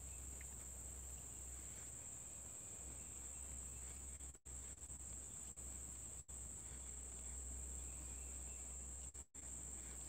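Steady high-pitched insect chorus, a continuous even buzz, over a low rumble.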